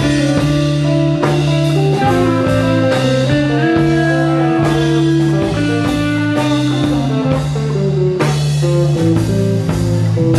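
Live psychedelic rock band playing an instrumental passage: guitar lines over long held bass notes and drums.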